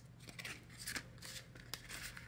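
Paper banknotes being handled and tucked into a binder envelope: a few faint, short rustles about half a second apart.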